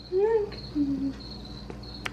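A cat's short meow, rising and falling, near the start, then a brief low hum about a second in, over a thin, steady, high cricket trill.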